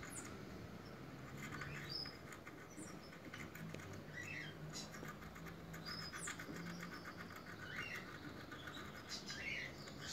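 Faint birds chirping now and then, a few short calls spread through, with soft clicks and scrapes from a knife working into a dragon fruit cactus stem and a faint low hum in the middle.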